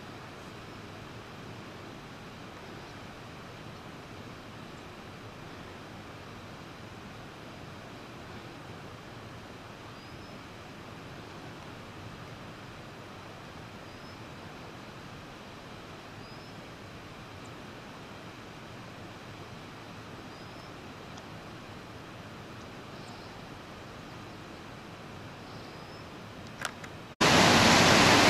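Steady faint rush of a distant mountain waterfall, with a few faint short high chirps scattered through it. About a second before the end it cuts abruptly to the loud, close rush of water.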